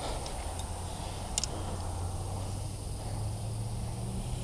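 Outdoor dusk ambience: a steady high insect chirring over a low, uneven rumble, with one faint click about a second and a half in.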